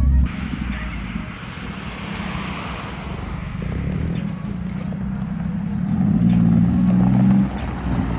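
A Honda Acty mini truck's small engine running as the truck drives across gravel, with tyre noise; the engine note grows louder and climbs about six seconds in, then drops away suddenly.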